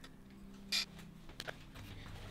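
Light handling noise of road-bike brake/shift levers being nudged into line on the handlebars: a brief scuff a little under a second in, then a couple of faint ticks, over a low steady hum.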